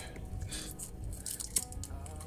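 Faint rustling of a small cloth drawstring pouch and light handling sounds as small plastic phone accessories are taken out, with one sharper click a little over halfway through.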